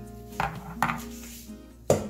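Background guitar music, with three sharp knocks of kitchenware, the last and loudest near the end, as the glass blender jar is handled over a steel saucepan.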